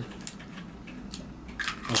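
A few light clicks and taps of a small plastic pocket stamp being handled and pressed onto a wooden tabletop.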